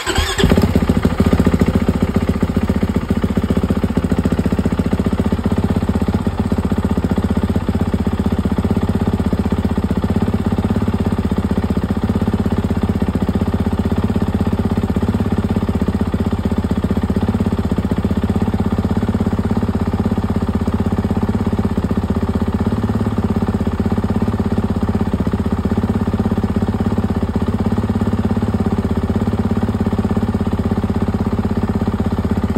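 2023 Kawasaki KX450X's single-cylinder four-stroke engine fires up and settles into a steady idle. It is loudest in the first second or two after starting.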